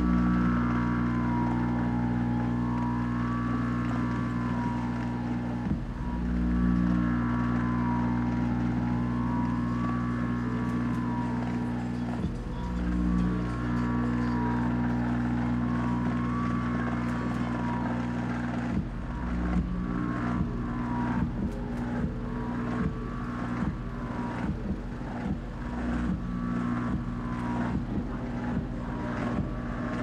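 Electronic soundtrack of a building projection show: a deep, sustained synthesizer drone that changes chord every few seconds, with a higher tone slowly warbling up and down over it. About two-thirds of the way in, regular sharp clicking percussion joins.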